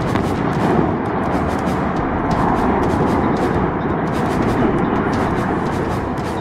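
Demolition collapse of a coal-fired power station's boiler house: a long, loud rumble of the falling structure with dense crackling, following the blast of the charges.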